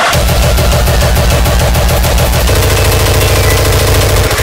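Frenchcore music: a rapid roll of distorted hardcore kick drums, hammering like machine-gun fire, which turns faster and denser about halfway through.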